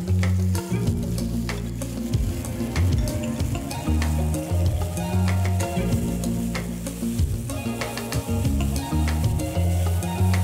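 Onion and sweet pepper strips sizzling in hot olive oil in a frying pan, stirred with a silicone spatula that clicks and scrapes against the pan now and then. Background music with a steady bass line plays under it.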